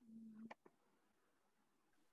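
Near silence: a faint short hum, then two faint clicks about half a second in.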